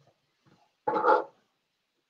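A single short dog bark about a second in.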